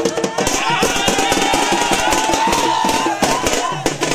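Fast festival drumming with crowd voices over it. A loud, wavering high note is held from about half a second in until shortly before the end.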